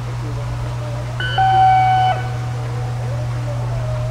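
A single steady electronic tone, like a horn or buzzer, sounds for about a second a little after the start, over a constant low hum.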